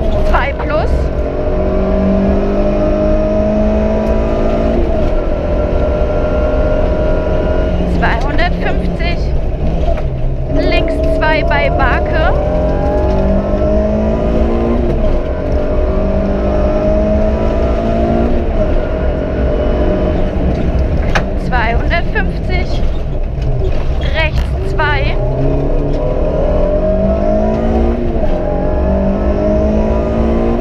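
Suzuki Swift Sport rally car's engine heard from inside the cabin, driven hard: its pitch climbs steadily and drops at each upshift, again and again, with a few lifts off the throttle.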